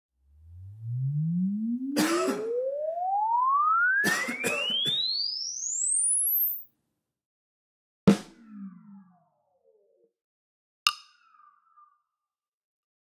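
A sine-wave sweep rising steadily from a low hum to a very high whistle over about six and a half seconds, with a person coughing twice during it. Then two drumstick clicks, about three seconds apart, are played through the reverb made from that sweep. Their reverb tails carry the coughs as falling glides in pitch: the artifact of a cough recorded during a sine-sweep impulse response.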